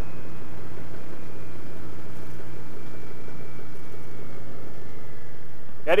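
Yamaha MT-07's 689 cc parallel-twin engine running steadily while riding, with wind and road noise; a faint high whine slowly drops in pitch.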